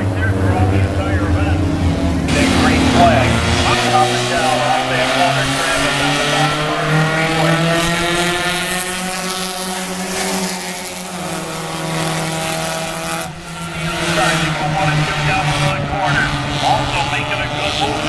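A pack of four-cylinder Dash Series stock cars racing on an oval, several engines running at once, their notes rising and falling as the cars pass.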